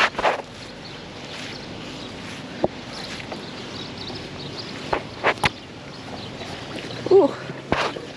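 Handling noise while a magnet-fishing rope is hauled in by gloved hand: a steady outdoor background with scattered sharp clicks and knocks, including a quick run of three about five seconds in.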